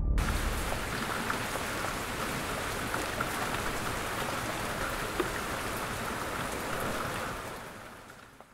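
Heavy rain falling in a torrential downpour: a steady hiss of rain with scattered drop ticks, fading out near the end.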